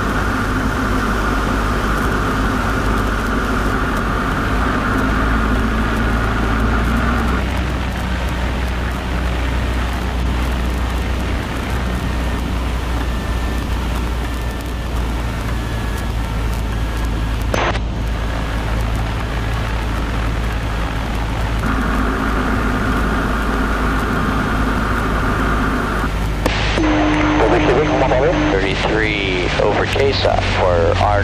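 Cessna 152's four-cylinder Lycoming engine and propeller droning inside the cabin through short final, touchdown and the landing roll. A steady high tone sounds for the first several seconds and again about three quarters of the way through, with a sharp click a little past halfway and warbling voice-like sounds near the end.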